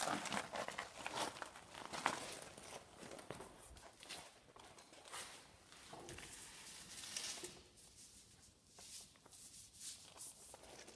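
Irregular scratching and rustling with small knocks: a utility knife marking the tap's rod and the rod and its insulation being handled.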